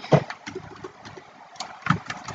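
Computer keyboard keys being tapped, a handful of short separate clicks, as a word is deleted with backspace and retyped. A faint steady hum lies underneath.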